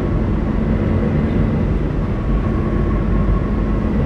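Steady road and engine noise inside a vehicle's cabin while driving at highway speed, with a faint steady hum running through it.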